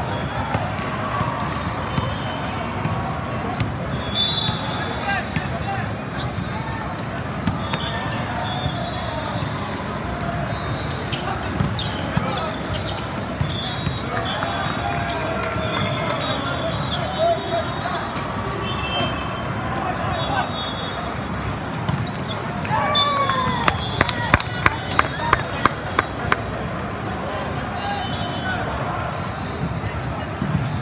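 Busy indoor volleyball hall: many overlapping voices of players and spectators, with short high tones scattered through. About two-thirds of the way in comes a quick run of about eight sharp knocks, some three a second, as a ball is bounced on the court.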